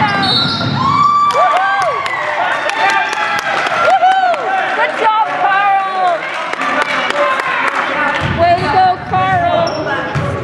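Basketball shoes squeaking on a hardwood gym floor in many short chirps, with a basketball bouncing and voices calling out during a youth game.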